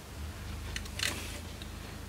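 Faint handling noise from working on a lightning cable's plug: a few small clicks and a brief scratchy scrape about a second in, over a steady low hum.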